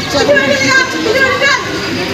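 Children's voices talking and calling over one another, raised and overlapping, fading out near the end.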